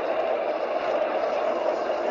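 Video slot machine (More Huff N' Puff) playing a steady, rushing wind sound effect while a house on the reels is blown apart.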